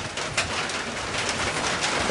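Steady hiss of light rain, with a few faint clicks.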